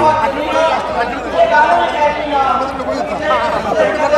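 Several men's voices talking over one another at once: loud, overlapping chatter with no single clear speaker.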